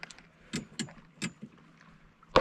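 A few light plastic clicks and rattles as a clear plastic tackle tray of soft-plastic lures is handled.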